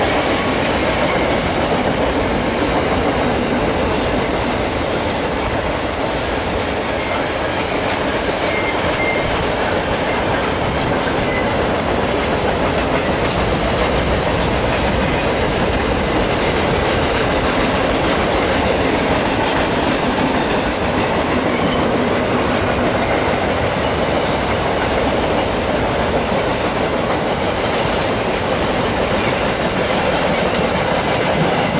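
Freight train of loaded flatcars rolling past: a steady, continuous rumble and clatter of steel wheels on the rails, with a couple of faint, brief wheel squeals near the middle.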